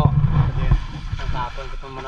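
Men's voices talking in a loose, casual way, with a loud low rumble on the microphone during the first second.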